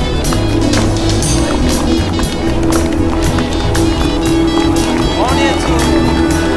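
Music with a steady beat over held bass notes.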